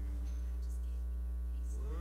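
Steady electrical mains hum on the audio feed, with faint music and singing beneath it.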